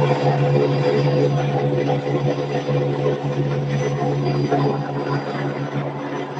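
Rotary screw air compressor driven by a permanent-magnet motor on a variable-frequency drive, running steadily under load at about 3000 rpm and 13 kW: a steady machine hum with a strong low drone and several higher steady tones.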